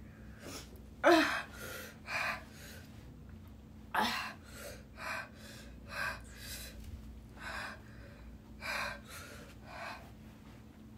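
A woman gasping and breathing hard in short, noisy breaths, about one or two a second, with sniffs. Her mouth is burning from the Paqui One Chip Challenge chili chip. The loudest gasp, about a second in, carries a brief voiced 'ah'.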